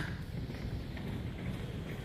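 Steady, quiet outdoor background noise: a low rumble with no distinct events.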